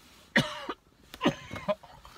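A man coughing twice, about a second apart, in the middle of a coughing fit.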